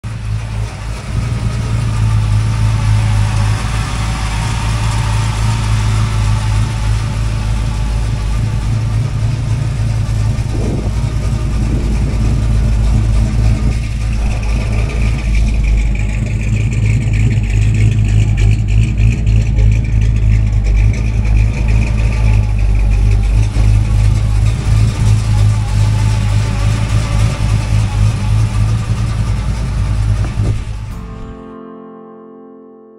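A 1957 Chevrolet Bel Air's 350 V8, fitted with headers and a dual exhaust with Flowmaster mufflers, running with a steady, deep exhaust note. The tone of the sound shifts about halfway through.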